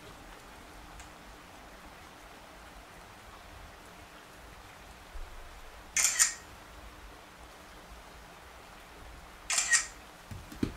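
Smartphone camera shutter sound, twice: a sharp double click about six seconds in and again near the end, over quiet room tone.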